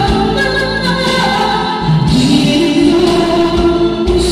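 A man singing a ballad into a handheld microphone over a backing track, holding a long note through the second half.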